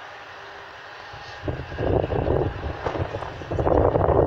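Storm-force wind gusting onto the phone's microphone: a steady rush at first, then about a second and a half in a loud, rough, low buffeting that swells and dips as the gusts come.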